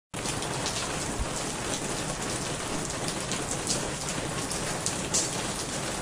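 Steady rain falling, with scattered louder drop strikes standing out from the even wash.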